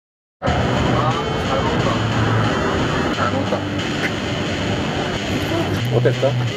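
Silence, then about half a second in, loud outdoor noise cuts in suddenly: a steady rush with men's voices talking under it.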